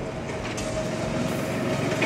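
Trencher engine running steadily, a drone with a held whine on top, slowly getting louder.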